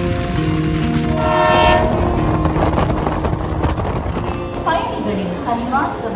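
Passenger train running, with a steady rumble and its horn sounding about one to two seconds in.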